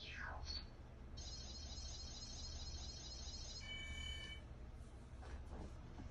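Electronic sound effects: a quick falling swoosh, then a shimmering high chime held for about two and a half seconds, giving way to a brief steady three-tone beep, over a low steady hum.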